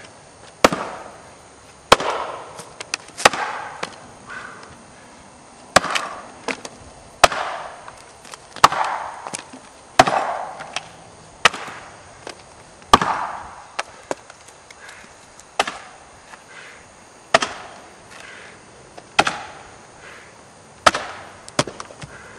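Axe chopping into the block of a springboard-chop pole: sharp blows about one every one and a half seconds, each followed by a short ring.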